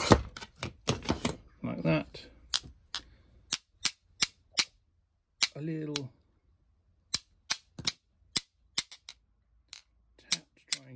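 A small steel ball-nose jeweler's hammer taps the underside of a scored fused-glass puddle to run the score. It makes a long series of light, sharp clicks, about three a second, after a louder knock at the start and with a short pause about two-thirds of the way through.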